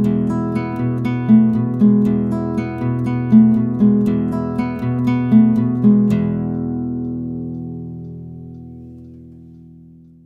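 Acoustic guitar picked in a repeating pattern of notes, then a final chord about six seconds in, left to ring and fade out, closing the song.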